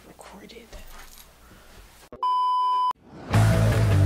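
After a faint stretch, a loud, steady one-pitch electronic beep sounds for under a second about two seconds in. It cuts off, and loud rock music with guitar starts near the end.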